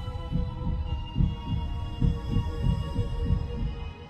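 Heartbeat sound effect: fast, deep thumps about three a second over a held, droning music pad. The heartbeat stops near the end, leaving the drone.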